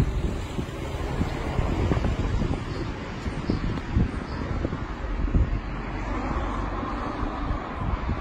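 Wind buffeting a handheld phone's microphone, a low uneven rumble, over the sound of street traffic.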